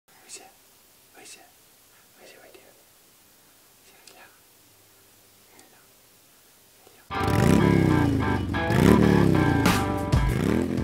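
Faint whispering for the first seven or so seconds, then loud electronic intro music starts abruptly, with repeated sweeping rises and falls in pitch.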